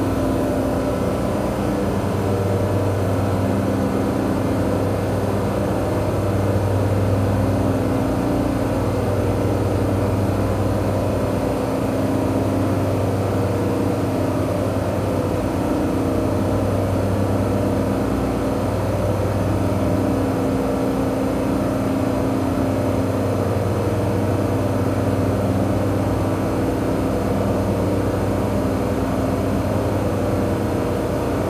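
Steady low machinery hum of running plant equipment, with several held tones that swell and ease slightly every few seconds.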